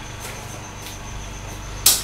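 Quiet handling sounds of a tape measure and fabric being marked on a table, over a steady background hum, with one sharp tap near the end.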